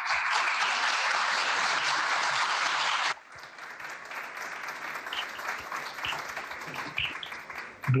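Audience applauding, loud for about three seconds, then suddenly much quieter for the rest.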